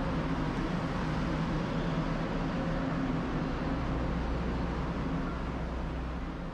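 Diesel engines of a Taiwan Railways DRC-series diesel multiple unit running steadily as the train stands at the platform, a low even drone that eases slightly near the end.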